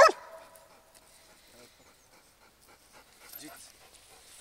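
A Belgian Malinois gives one loud bark at the very start, the last of a steady series of barks about a second apart, as it barks at a decoy in a bite suit during a hold-and-bark guarding exercise. After that bark only faint, low sounds follow.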